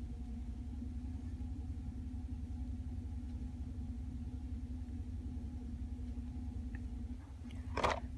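Pickup truck idling, a steady low hum heard inside the closed cab, with a brief short sound near the end.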